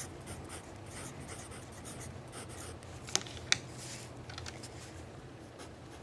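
A pen writing on a paper form, a faint scratching of the tip across the sheet, with two short sharp ticks a little past halfway.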